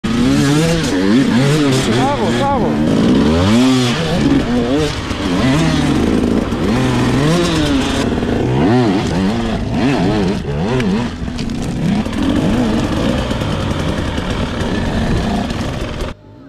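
Off-road dirt bike engines revving up and down in repeated throttle bursts as the bikes pick their way over rocks and mud, the pitch rising and falling every second or two.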